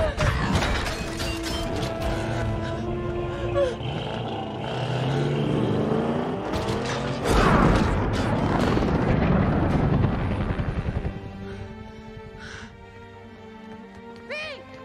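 Film soundtrack: score mixed with heavy booming and rumbling effects, loudest about halfway through with some falling sweeps. About 11 seconds in the rumble cuts off, leaving quieter sustained music.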